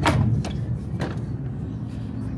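Fold-down seatback tray table on a train seat being pulled open: a sharp plastic clack as it releases, then two lighter clicks as it settles flat, over the steady low rumble of the train carriage.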